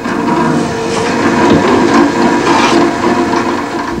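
Drill press running, its bit boring through a thin sheet: a steady motor hum with a cutting noise on top.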